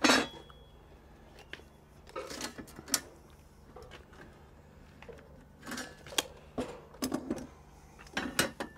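Hand tools being handled on a galvanised steel trunking lid while it is measured and marked: a sharp clank right at the start, then scattered light clicks and taps from a tape measure and a square set against the metal.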